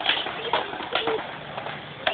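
Skateboards knocking and rolling on concrete, with three sharp clacks in the first second over a steady rolling noise.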